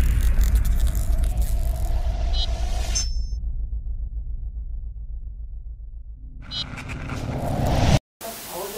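Cinematic logo intro sting: a deep rumble that slowly dies away, with glittering chime tones over the first three seconds. Near the end a rising whoosh swells and then cuts off suddenly.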